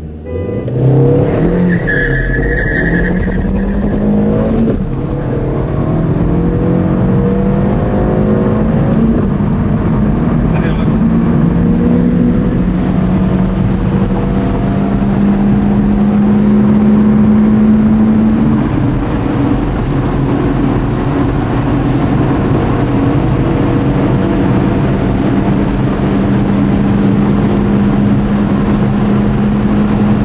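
Car engine heard from inside the cabin, accelerating hard from a standing start and shifting up through several gears in the first nine seconds or so. After that it runs at a steady high speed with wind and road noise.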